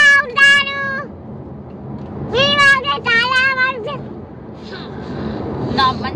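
A toddler's high-pitched voice: two drawn-out squeals, the first about a second long and the second, starting about two seconds in, about a second and a half long, over steady car-cabin road rumble.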